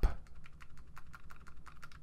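Computer keyboard's left arrow key pressed over and over in quick succession: a fast, even run of key clicks.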